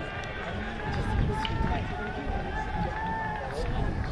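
Distant voices of rugby players calling out across an open field, some calls drawn out for about a second, over a steady low rumble.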